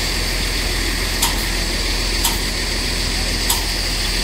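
Heavy diesel engine idling steadily, with three short, sharp clicks spread through the sound.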